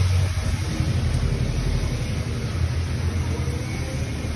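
A low, steady rumble with a fluctuating hiss over it.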